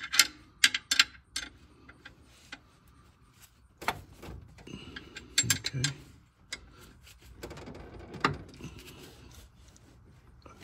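Metal-on-metal clicks and clinks of a wrench working a torque-converter bolt on the flexplate as it is loosened: a quick run of sharp clicks at the start, then scattered clicks and a few dull knocks.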